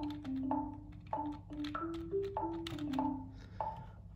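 Software marimba playing a short syncopated riff on the notes of a pentatonic scale, over a metronome clicking at 97 bpm, about one and a half clicks a second.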